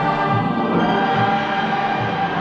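Orchestral film score with a choir singing over the orchestra; a new passage begins at the start after a held chord breaks off.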